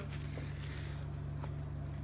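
A steady low hum from a running machine or electrical equipment, with no other clear events.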